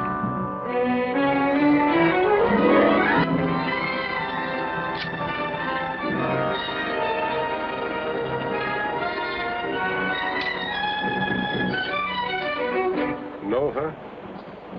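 Orchestral film score led by strings, with a rising sweep in pitch over the first few seconds and then held chords.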